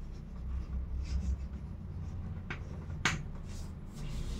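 Chalk scratching and tapping on a chalkboard as a word is written, with one sharp tap about three seconds in.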